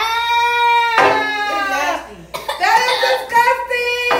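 High-pitched wailing and shrieking voices in long held cries, with a short break about halfway, made by people reacting to eating very spicy instant noodles.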